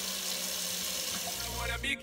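Kitchen mixer tap running, water pouring into a stainless steel sink in a steady hiss. A low rumble comes in near the end.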